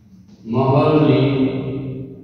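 A man's voice drawing out one long, held syllable, starting about half a second in and fading near the end.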